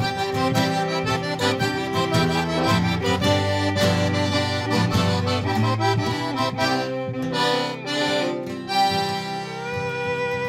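Live instrumental folk tune led by a diatonic button (Cajun) accordion, with an acoustic guitar strumming underneath and a fiddle playing along. Near the end a long held fiddle note comes in.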